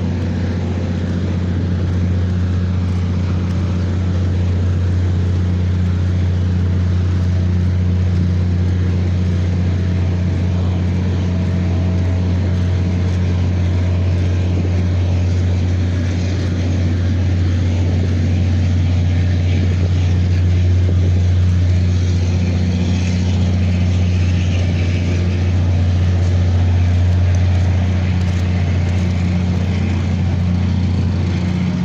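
Diesel generator running at a constant speed, a loud, steady low drone that does not change in pitch.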